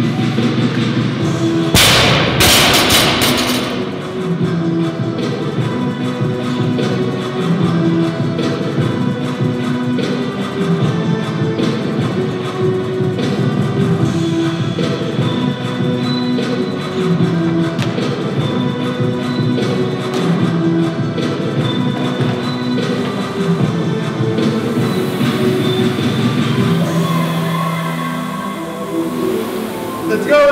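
Background music with a steady beat throughout. About two seconds in, a loaded barbell with bumper plates is dropped onto the gym floor: a loud impact with rattling that dies away over about a second and a half.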